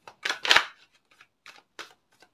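Tarot cards being shuffled by hand, one packet pushed into the other: a loud rush of sliding cards in the first second, then a few shorter, quieter flicks.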